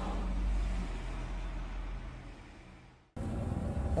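Low steady rumble of outdoor street noise on a phone microphone, fading out over a couple of seconds into a moment of silence about three seconds in, then cutting straight back in.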